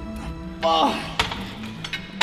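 A short strained vocal grunt falling in pitch as a cable crossover set is finished, then two sharp metallic clinks from the cable machine's weight stack as it is let down.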